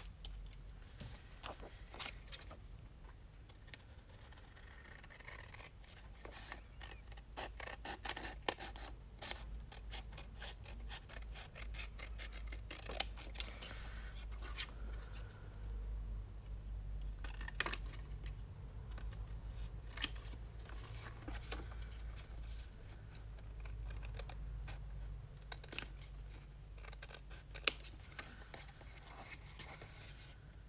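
Scissors cutting through paper card in a long run of irregular snips, with one sharper, louder click near the end.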